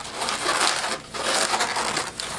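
Inflated latex 260 modelling balloons rubbing against each other and the hands as they are twisted and bent into shape, in two stretches with a short break about a second in.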